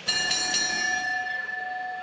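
Boxing ring bell struck once, its metallic tone ringing on steadily for about two seconds.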